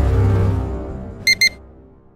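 Background music fading out, with a quick double electronic beep about a second and a half in from the Oceanic VTX dive computer as its screen switches on.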